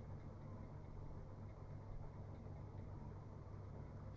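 Quiet room tone: a steady low hum with a faint hiss underneath.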